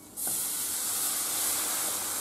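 Meat stock poured into a hot frying pan of flour cooked in oil, hissing and sizzling as the liquid hits the hot pan. The hiss starts suddenly just after the start and holds steady.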